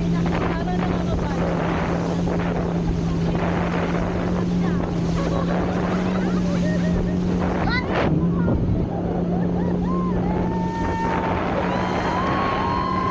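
Towing motorboat's engine running at a steady pitch under heavy wind on the microphone and rushing water, as an inflatable banana boat is pulled at speed. Riders' voices rise in high shrieks and laughter from about halfway, with a short sharp noise about two-thirds through.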